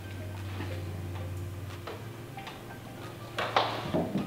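Soft rustling and a few light taps of a sock being pulled on over the foot, with aluminium foil under it. A low steady hum runs underneath, and the loudest rustle comes near the end.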